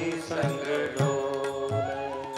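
Man singing a Hindi Krishna bhajan, drawing out the word "dole" over sustained instrumental accompaniment, with low drum strokes about twice a second.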